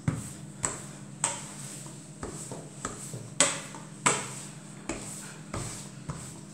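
Stainless-steel rolling pin rolling out a sheet of croissant dough, with a sharp metallic click at each stroke, about one every half second to second, over a faint steady hum.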